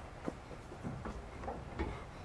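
Four light knocks and taps from someone moving on a painted wooden frame, the loudest near the end.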